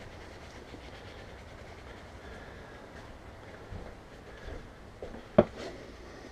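A plastic scoop knocks sharply once against the rim of a plastic bin near the end, over a low, steady background rumble.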